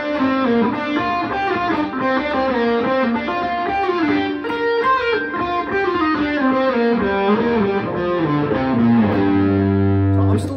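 Electric guitar playing a fast run of single notes up and down the G minor pentatonic scale, three notes per string, linking the first and second positions. The run ends on a held low note near the end.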